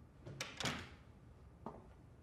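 An office door being opened by its handle: a sharp latch click about half a second in, then a louder, longer rush as the door moves. A single short tap comes near the end.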